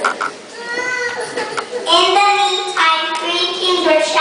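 Young children singing, their voices held on long steady notes, with a short pause in the first second and louder singing from about two seconds in.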